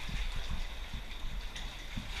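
Irregular muffled low thumps and rustling from movement close to a body-worn action camera, several knocks a second over a steady hiss.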